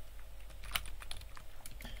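Typing on a computer keyboard: a run of irregular keystroke clicks, the sharpest about three-quarters of a second in, over a faint low hum.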